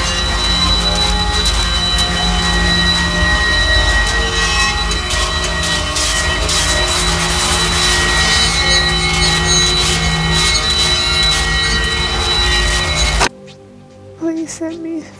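Harsh power-electronics noise: a loud, dense wall of hiss and low rumble with steady high whistling tones laid through it. It cuts off abruptly just before the end.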